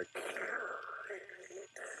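A fluid extractor's suction hose down the dipstick tube slurping the last of the engine oil mixed with air. It makes a gurgling hiss, like the bottom of a milkshake or a dentist's suction, which means the sump is nearly empty. It breaks off briefly near the end.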